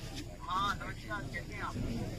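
A high-pitched voice from about half a second in to near the end, over steady low background noise.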